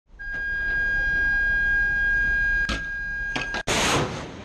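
A steady high tone with a couple of clicks near its end, then, about three and a half seconds in, the sudden loud rushing blast of a missile leaving a ship's deck-mounted box launcher.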